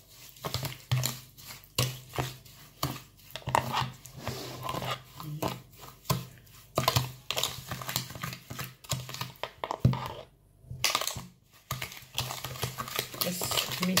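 Metal spoon stirring and scraping a gritty brown-sugar scrub in a bowl: quick, irregular scrapes and clinks, with a short pause about two-thirds of the way through.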